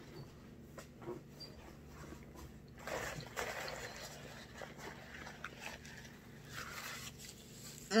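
Faint mouth sounds of a person chewing a bite of a keto snack bar, with soft breathy noises about three seconds in and again near the end.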